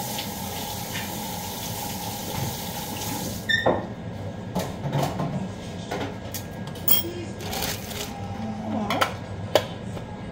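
A steady whirring hiss with a faint hum stops abruptly about a third of the way in. It is followed by scattered clinks and knocks of dishes and utensils being handled on a kitchen counter.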